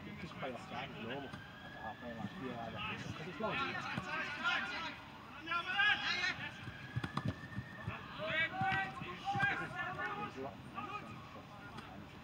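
Football players shouting and calling to each other during a small-sided game on an outdoor pitch, including two long drawn-out calls, with a few short knocks around the middle.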